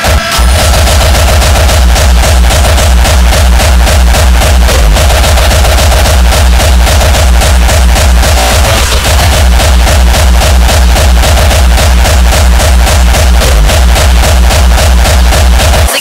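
Industrial hardcore DJ mix: a fast, heavy kick drum drives a steady pounding beat under dense electronic layers, and the kick drops out right at the end.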